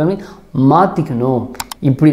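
A man speaking, with a quick pair of mouse-click sound effects about one and a half seconds in as a subscribe button is clicked.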